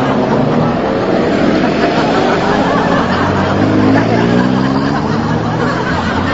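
Engine of a city public-transport vehicle running as it drives, its note rising about three to four seconds in and then easing off, over steady road noise.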